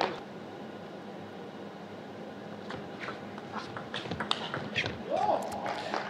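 Quiet arena ambience between table tennis points, with a few light, separate taps of a celluloid table tennis ball being bounced in the second half. A brief voice comes in near the end.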